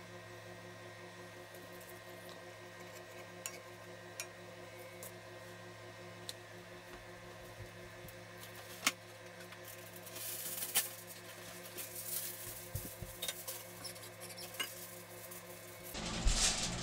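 An egg frying in butter in a cast iron skillet on low heat: faint scattered small pops and ticks, with a denser spell of crackling sizzle about ten seconds in, over a steady low hum.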